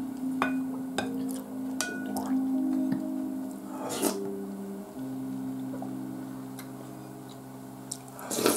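Spoon clicking against a bowl a few times and a slurp of soup from the spoon about four seconds in, over soft background music of low held notes.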